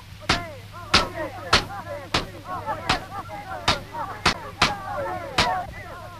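Long wooden fighting staves cracking against each other in about nine sharp blows, irregularly spaced but under a second apart. Under the blows are overlapping shouts and a steady low hum.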